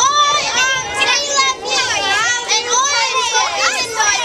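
A group of girls' voices calling out together, high-pitched and overlapping, loud and excited.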